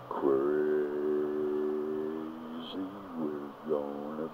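A person's voice singing or humming wordless notes: one long held note of about two seconds, then several short notes that bend in pitch.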